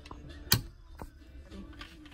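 A plywood cabinet door swung shut, giving one sharp click about half a second in as it meets its magnetic catch, followed by a few faint ticks.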